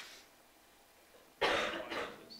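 A person coughing once, a loud rough burst about one and a half seconds in, after a near-quiet pause.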